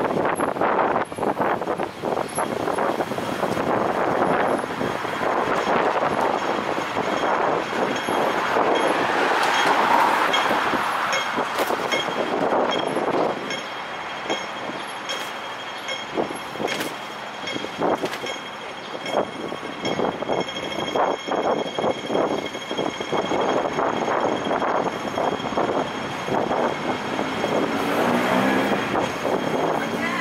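Busy city-street traffic noise beside the road: a steady wash of passing vehicles, swelling loudest about ten seconds in as a heavy vehicle goes by.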